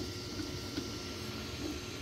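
Creality Ender 3 V3 SE 3D printer running mid-print: a steady whir from its cooling fans and motors, with a faint steady whine.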